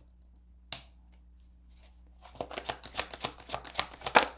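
A deck of tarot cards handled and shuffled by hand: one sharp tap about three-quarters of a second in, then a quick run of card clicks and rustles from about halfway through.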